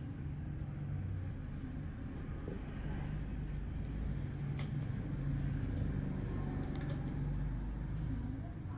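Steady low hum and rumble of background machinery or traffic, with a couple of faint clicks.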